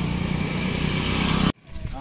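A steady engine drone that cuts off abruptly about one and a half seconds in, followed by voices.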